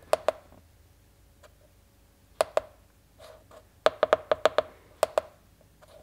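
Buttons on a handheld OBD2 scan tool's keypad clicking as they are pressed to scroll and select menu items: a pair of clicks at the start, another pair, then a quick run of about six presses and a last pair.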